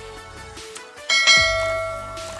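A bright bell chime, the notification-bell effect of an on-screen subscribe animation, strikes once about a second in and rings away, over background music.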